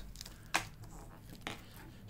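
Handling noise from a watch wrapped in thick protective plastic film being turned in the fingers: a sharp click about halfway through, a fainter one near the end, and light crinkling.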